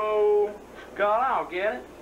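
A person's voice making wordless vocal sounds: one held, level vowel for about half a second, then short sounds that rise and fall in pitch about a second in.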